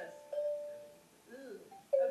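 A bell rung twice, about a third of a second in and again near the end, each stroke a clear single tone that fades away.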